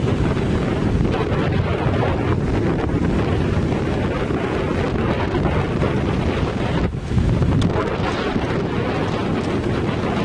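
Wind buffeting the microphone over small ocean waves breaking and washing up on a sandy shore. It is a steady, heavy rush, with a brief lull about seven seconds in.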